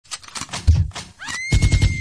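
A horse whinny sound effect: a pitched cry that rises and then holds one long high note from a little past the first second, over a fast run of low thumps. Before it come scattered knocks and a loud low thump.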